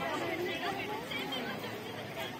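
Several people talking at once nearby, an indistinct chatter of voices.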